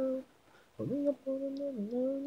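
Unaccompanied solo singing voice holding sustained notes: one note breaks off just after the start, then after about half a second of silence the voice scoops up from below into a long held note that dips briefly in pitch near the end.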